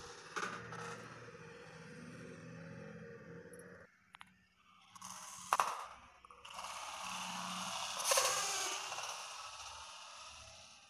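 Plastic Kinder Joy egg capsules handled on a tiled floor: a sharp knock as one is set down about halfway through, then the scrape of an egg rolling across the tiles for a few seconds.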